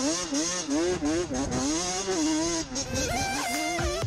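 Racing kart engines revving, their pitch swinging up and down again and again, with music underneath.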